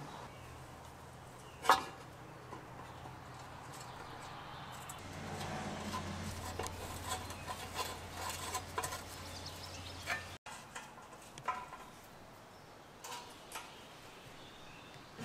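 A screwdriver working the screws of a cast metal cover plate: one sharp metal click about two seconds in, then faint scraping and small ticks. A low steady hum runs under the middle part.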